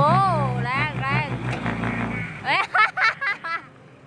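Heavy diesel machinery engine running steadily under excited voices, its low hum cutting off about two seconds in.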